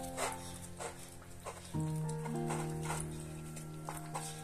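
A puppy eating from a plastic food bowl, making irregular chewing and clicking sounds a few times a second, over background music of slow held chords.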